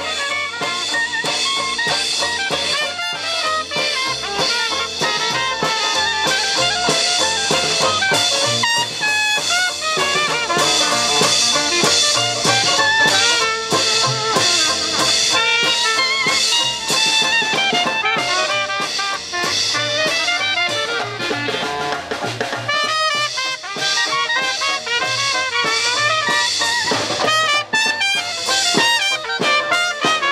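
Small Dixieland jazz band playing live: trumpet and clarinet lead the melody over a steadily played drum kit, from a group with double bass and banjo.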